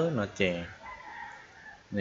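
A faint, drawn-out animal call about a second long in the background, heard in a gap between a man's spoken words.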